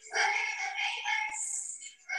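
Soundtrack of a children's stage performance played back over a video call: young voices singing with music. One phrase fills most of the two seconds, with brief breaks at either end.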